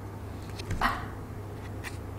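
A stiff picture-book page being turned: one short soft rustle a little under a second in, then a faint tap near the end, over a low steady room hum.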